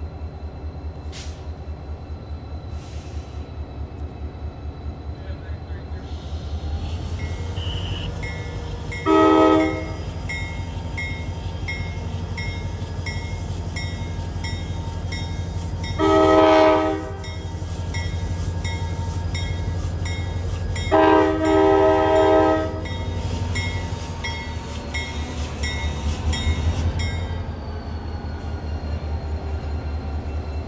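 Rochester & Southern diesel locomotive running, its engine rumble building as it starts to pull the train, with a bell ringing steadily. Its horn sounds three times, the last blast broken into a short and a longer part.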